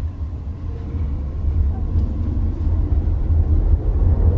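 Low, steady rumble of road and tyre noise inside the cabin of a moving Nissan Leaf electric car, with no engine note.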